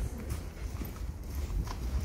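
Footsteps in snow, a few irregular steps over a steady low rumble.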